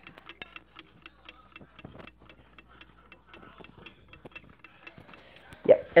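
Alarm clock ticking: a quick, even tick, several ticks a second, that is really loud for a clock.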